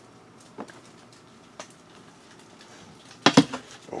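Hard objects clicking and knocking at a glass terrarium while its web is being broken into: a couple of faint single clicks, then a louder cluster of sharp knocks near the end.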